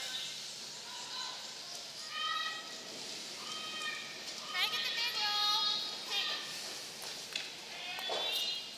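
Women curlers' drawn-out shouted calls in an arena: several long, high-pitched yells, some held on one pitch and some sliding, loudest about halfway through, over steady arena noise.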